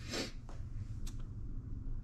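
Mostly quiet room noise with a short, soft rustle near the start and two faint clicks.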